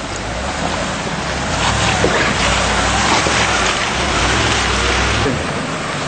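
Land Rover four-wheel drive's engine pulling under load as it drives through a creek crossing, with water rushing and splashing around the vehicle. The splashing is loudest through the middle and drops off sharply near the end.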